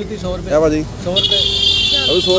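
A vehicle horn gives one long, steady, high-pitched blast, starting a little over a second in.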